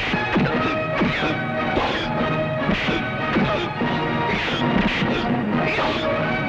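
Film fight-scene punch and hit sound effects in quick succession, about two a second, over a steady action background score.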